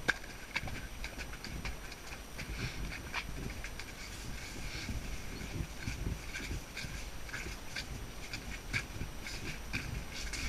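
A 13.2 hand pony's hoofbeats on a wet, muddy track, heard from the saddle as a run of irregular low thuds mixed with sharp clicks.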